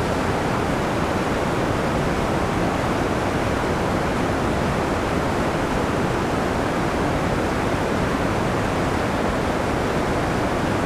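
Creek water rushing through shallow white-water rapids, a steady, even rush that never lets up.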